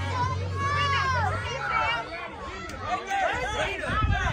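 Overlapping chatter of several spectators' voices, no single speaker clear, with a low steady hum for the first second and a half.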